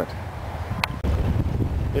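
Wind buffeting the microphone outdoors, an uneven low rumble, with one short click a little under a second in.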